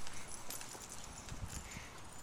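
Light, uneven thumps and clicks of footfalls on dry grass, with a wooden stick knocking.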